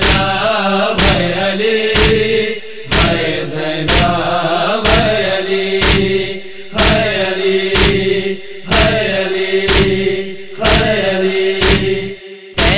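Noha lament: male voices chanting over a steady vocal drone, punctuated by sharp percussive strikes in pairs about every two seconds, the matam (chest-beating) rhythm of a Shia lament.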